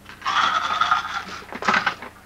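Small pill container being handled: a rasping, rattling scrape of about a second, then a shorter burst near the end.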